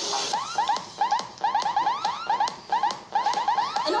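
An electronic chirping sound: quick rising tones repeating steadily several times a second, in an alarm-like pattern.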